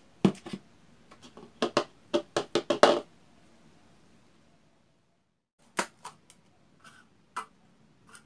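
Plastic takeaway cup handled on a table: a quick series of sharp knocks as it is set down and moved, then a few lighter clicks as a clear plastic lid is pressed onto it.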